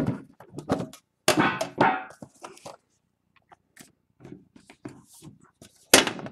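Trading cards and their packaging being handled: scattered taps, rustles and slides, with a sharp click just before the end.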